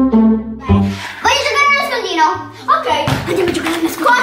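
Background music of plucked and bowed strings, joined about a second in by children's voices over the music, with one brief thump near the end.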